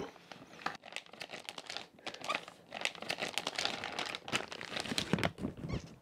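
Thin clear plastic bag crinkling and rustling as a camera is slid out of it and unwrapped by hand, in a run of irregular crackles that is busiest in the middle.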